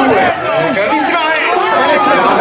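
Several voices talking and calling out over one another, with no pause.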